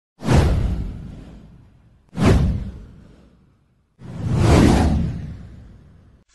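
Three whoosh sound effects from an animated title intro. The first two hit suddenly and fade over a second or so; the third swells up and then fades away.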